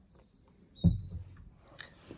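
A single dull thump about a second in, preceded by a faint, short, high chirp and followed by a small click near the end.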